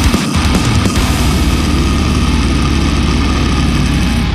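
Heavy progressive thall/deathcore metal: down-tuned distorted guitars and drums. About half a second in, the drum hits give way to a fast, even, low pulsing under a dense high wash.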